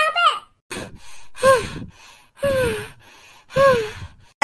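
A person's voice giving three breathy gasps, about a second apart, each falling in pitch.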